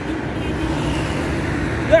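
Road traffic going by, with a passing vehicle's engine a steady low drone over the general hum of the street.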